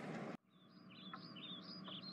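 Faint birdsong ambience: a quick series of short, high chirps beginning about a second in, over a low steady hum.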